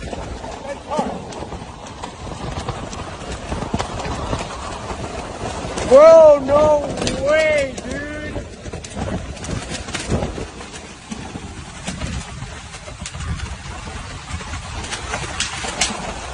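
Storm wind and rain blowing over a phone's microphone, with irregular buffeting knocks. About six seconds in, a person's voice gives a quick run of loud rising-and-falling exclamations, the loudest moment.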